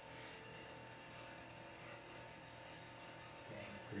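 Faint steady hum of the restored 1930 Clavilux light organ running, its motor-driven mechanism turning the glass disc. A voice comes in right at the end.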